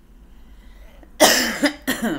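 A woman coughing twice, sharply, about a second in and again near the end, the first cough the louder.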